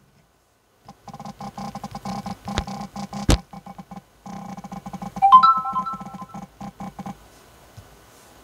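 A smartphone's haptic vibration motor buzzing in quick short pulses as keys are tapped on its on-screen keyboard, picked up by a clip-on microphone lying on the screen. The buzzing pauses briefly near the middle, peaks in one louder buzz about five seconds in, and stops about a second before the end.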